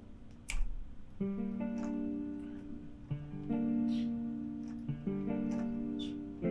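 Sampled guitar chords from Spitfire Audio's free guitar plugin: plucked chords that ring out and slowly fade, with new ones struck about a second in, around three seconds in and about five seconds in. A single sharp knock about half a second in.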